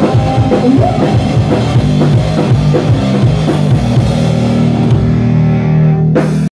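Live rock band playing loudly on electric guitar, bass guitar and drum kit. The drumming stops about four seconds in and a held chord rings out.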